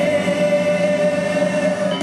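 Rock band's sustained final chord with a long held sung note, steady in pitch, cutting off near the end.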